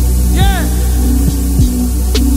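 Slow, dark hip hop beat without vocals: a deep sustained bass under kick hits that drop sharply in pitch, with a short synth tone that bends up and back down about half a second in.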